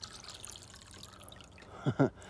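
Water from a garden hose pouring into a plastic sprayer tank filled nearly to the brim: a faint, steady trickling and splashing.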